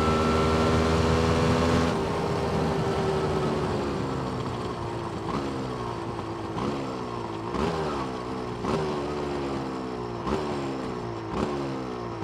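Yamaha DT200R single-cylinder two-stroke engine running at steady revs under way. About two seconds in the throttle closes, and the engine is worked down through the gears as the bike slows: the revs jump up and fall away roughly once a second. This is a check that the revs drop cleanly on deceleration during carburettor tuning.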